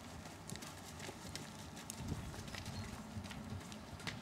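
Hoofbeats of a ridden horse moving across a dirt arena: a run of short, soft, uneven clicks and thuds.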